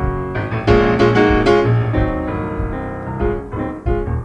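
Instrumental piano passage in a gospel-soul song: chords and quick runs of notes over sustained low notes, with no singing.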